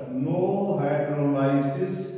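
A man's voice drawing out long, steady, chant-like vowels, words stretched slowly rather than spoken at a normal pace.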